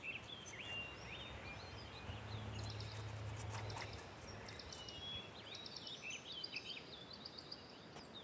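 Birds chirping and singing over quiet outdoor background noise, with a low hum for about two seconds near the middle.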